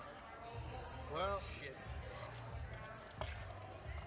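A short wordless vocal sound about a second in, its pitch rising then falling, over a low steady room hum; a single sharp click a little after three seconds, as a drinking glass is set down on the table.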